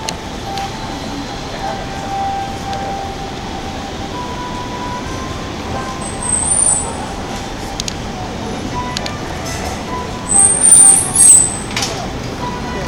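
Outdoor street ambience on a busy pedestrian shopping street: a steady din of voices and city noise with a few faint steady tones. Short, very high-pitched squeals cut through about six seconds in and again near the end, and these are the loudest sounds.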